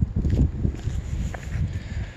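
Footsteps on a sandy, gravelly parking lot: a run of uneven low thuds.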